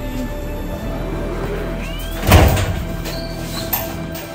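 Steady background music, with a single loud bang a little past halfway that is a heavy metal front door being banged open.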